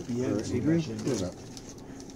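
A man's voice making a wordless, drawn-out sound that slides up and down in pitch for just over a second, then fades to quieter room noise.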